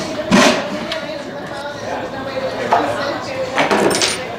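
A few sharp knocks from work on the machine, the loudest about half a second in and more near the end, over people talking in the background.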